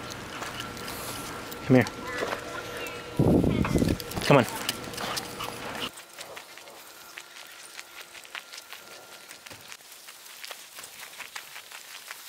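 Footsteps crunching on a gravel path: a quiet, uneven run of small clicks through the second half, after a few short spoken calls to a dog.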